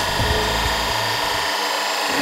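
A steady mechanical drone with a high whine, from laboratory machinery. Low background music underneath stops about three-quarters of the way through.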